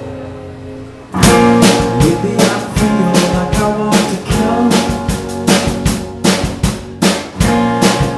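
Live rock band: a held electric guitar chord fades out, then about a second in the drum kit, bass and guitars come in together. Hard, regular drum hits and a steady bass line play under the guitars.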